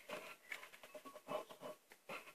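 A metal spoon stirring in a glass jar: a few faint, scattered scrapes and light taps.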